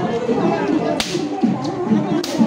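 A single sharp crack of a long rope whip, swung by a perahera whip-cracker on the road, about a second in, over a bed of crowd voices. This is the traditional whip-cracking that leads a Sri Lankan perahera procession.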